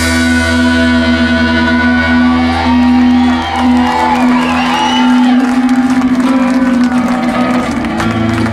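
Live rock band playing an instrumental passage with electric guitars: a held low note rings on while a higher guitar line bends up and down. The bass underneath drops out about halfway.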